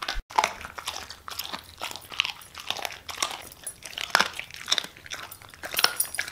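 Siberian husky chewing raw food, with irregular crunches and bites coming a couple or more each second.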